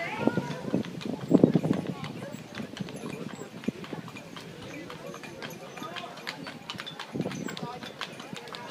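Hooves of a team of horses pulling a wagon, clip-clopping on a paved street as they come closer, with people talking, loudest in the first two seconds.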